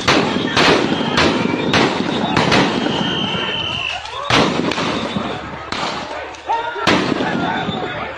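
A run of loud, sharp bangs during a street clash, about eight in all: a quick series in the first three seconds, then two more spaced a couple of seconds apart. Voices call out between the bangs.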